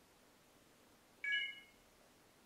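An iPhone's short charging chime, a bright several-note ding about a second in that fades within half a second, as the docked phone starts charging again when the booting Mac powers its USB dock.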